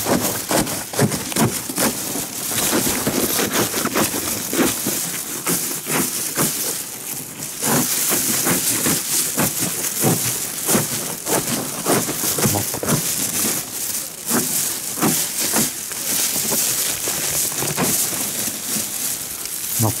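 The layered paper envelope of a large yellow hornet (Vespa simillima) nest being cut with a blade and torn apart by hand: a dense, continuous crackling and crunching of dry papery layers, with a stronger rustling patch about eight seconds in.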